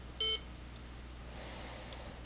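A single short electronic computer beep about a quarter second in, over a faint steady low hum.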